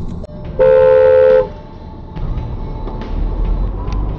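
A car horn sounding once for nearly a second, two steady tones together, over the low rumble of road and engine noise heard from inside a car.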